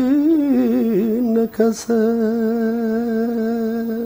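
A man singing a melody unaccompanied: a wavering, ornamented line with a brief break about a second and a half in, then one long steady held note.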